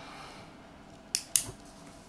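Two short, sharp clicks about a fifth of a second apart, a little past the middle, over faint room noise.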